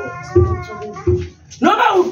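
A voice sings a long, drawn-out note that slides in pitch. Two low thumps come about half a second and a second in, and speech starts near the end.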